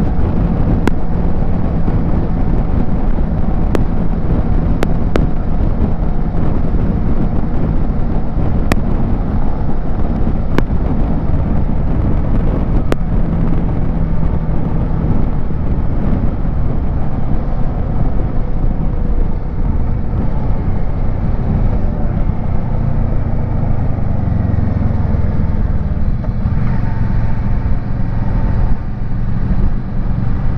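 Kawasaki Versys 650 parallel-twin engine running at steady highway speed under a constant rush of wind and road noise. In the last few seconds the engine note drops and changes as the bike slows into a bend.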